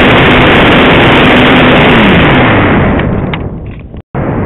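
Loud, distorted rush of wind over a camera on a radio-controlled model plane in flight, with a faint steady motor hum beneath. A little after two seconds in, the hum falls in pitch and the noise dies away, then cuts off just at the end.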